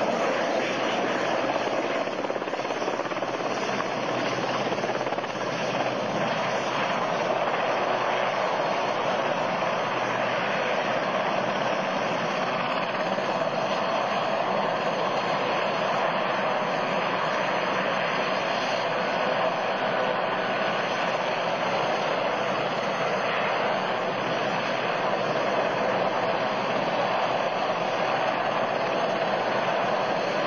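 Westland Sea King helicopter's main rotor and twin turbine engines running close by, a steady loud noise that does not let up as the helicopter hovers low and settles onto the ground.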